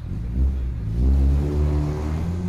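A motor vehicle's engine accelerating, a loud low rumble that rises slightly in pitch about half a second in and then holds.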